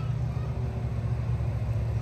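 A steady low hum with an even level and no change.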